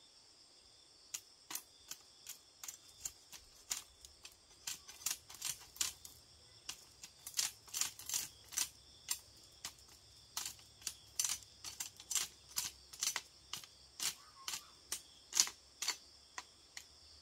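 A machete chopping and knocking at bamboo: sharp, irregular clicks about three a second that start about a second in, the loudest near the end. Behind them, a steady high buzz of crickets.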